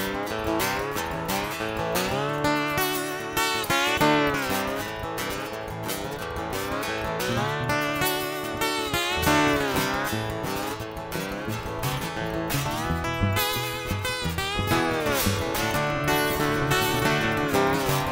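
Instrumental blues played live: a lap-style resonator guitar plays slide lines with pitches that glide up and down, over a strummed hollow-body guitar keeping the rhythm.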